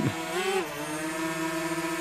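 Small DJI Mavic Mini quadcopter's propellers and motors giving a steady hum of several tones while the drone flies.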